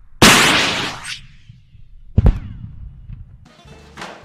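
A bazooka-type rocket launcher firing: a loud rushing blast that dies away over about a second. About two seconds in comes a sharp bang, the round striking the target.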